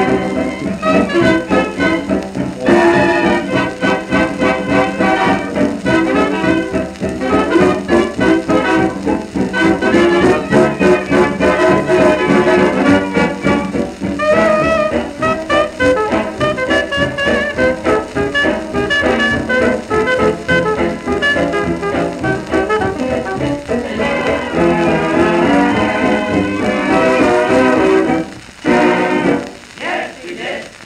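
Fox-trot played by a dance orchestra from a 78 rpm shellac record: an instrumental passage with brass to the fore. The band drops out briefly near the end.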